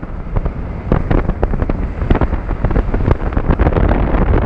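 Roller coaster ride heard from a camera mounted on the front of the train: wind rushing over the microphone, with rapid irregular knocks and rattles from the train running on the steel track. It is briefly quieter at the very start, then loud again.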